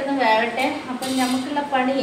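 Steel kitchen utensils and a steel plate clinking lightly as they are handled, a few short metallic clinks.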